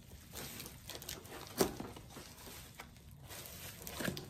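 Faint rustling and crinkling of a wrapped package being pulled and torn open by hand, with one sharp click about one and a half seconds in.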